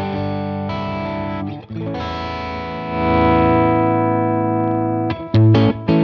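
Electric guitar played through the Wampler Pantheon Deluxe overdrive pedal on its second channel: distorted chords held and ringing, changing a couple of times and growing louder about halfway through, then a few short, sharp strums near the end.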